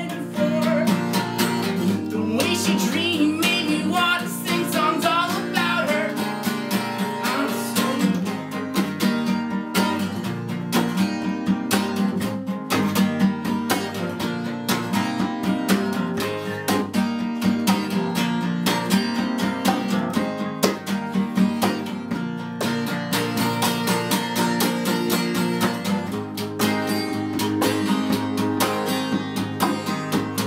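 Acoustic guitar strummed in a steady rhythm, a folk-style instrumental passage of a live solo song.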